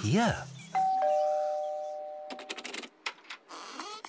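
Two-note ding-dong doorbell chime, a higher note then a lower one. It sounds about a second in and rings out, fading over about a second and a half. A quick run of small clicks follows.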